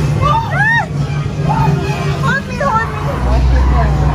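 Haunted-maze soundscape: a steady low droning hum over a deep rumble, with short voice-like cries that rise and fall in pitch.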